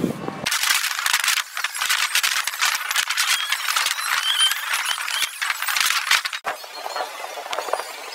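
Rushing, crackling air noise across a phone microphone on a swing ride in full spin, with faint high squeals of riders in it. It drops suddenly about six and a half seconds in and carries on somewhat quieter.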